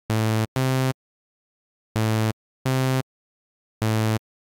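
Low, buzzy synthesizer notes from Serum, played from a MIDI clip in a sparse looped pattern. There are two short notes in quick succession, a pause, two more, and a fifth near the end. Each note holds a steady pitch and cuts off sharply, with silence between.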